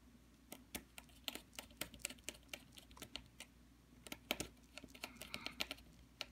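A small screwdriver turning the screw of a PCB screw-terminal block to clamp a toroid choke's wire lead, heard as a run of faint, irregular clicks, several a second.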